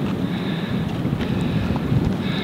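Wind buffeting the microphone: a steady low rumble that rises and falls slightly.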